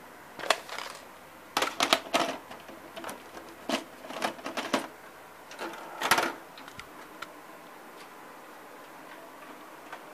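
A VHS cassette being handled and pushed into a Samsung VR5656 VCR: a string of hard plastic clicks and knocks, irregular and spread over the first five seconds, with the loudest clunk about six seconds in as the tape is loaded, then only a faint steady hum.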